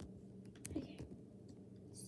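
Faint steady room hum with a soft, near-whispered "okay" about a second in, just after one small click.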